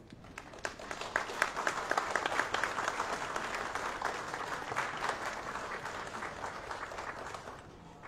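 Audience applauding, picking up within the first second and slowly tapering off towards the end.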